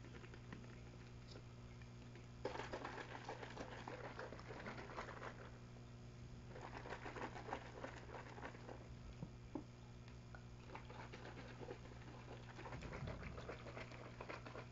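A plastic spray bottle holding a lotion mixture being shaken, a faint rapid patter of sloshing and rattling that starts a few seconds in and comes in three bouts with short pauses. A low steady hum runs underneath.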